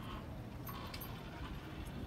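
Quiet steady background noise, strongest in the low range, with a few faint clicks.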